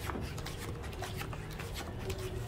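Playing cards being drawn from a dealing shoe and slid onto a felt blackjack table: a quick run of light snaps and slides, over a steady low hum of the room.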